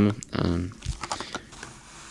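Light clicks and taps of fingers handling the plastic blister pack of a carded die-cast toy car, with a soft knock about a second in as the card is set down on the table.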